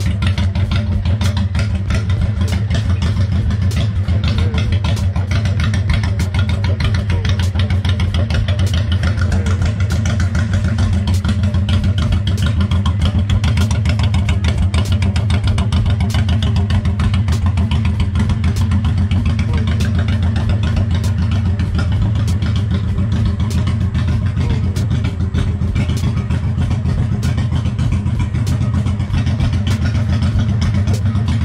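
1997 Honda VT1100 Shadow's V-twin engine idling steadily, a fast even pulse of exhaust beats through its chrome pipes.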